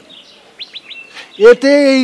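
A small bird chirps a few quick, falling notes in a lull in the dialogue. Near the end a person's voice cuts in loudly with a drawn-out word.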